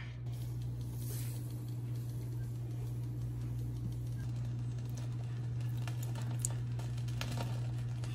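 Sugar being poured onto hot mashed strawberries in a cooking pot, a faint soft pattering, over a steady low hum.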